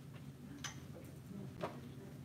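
Two light clicks about a second apart, the second one louder, over a steady low hum of the room.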